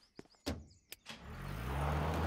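Cartoon pickup truck's engine running, growing steadily louder as the truck drives up, with a few light clicks in the first second.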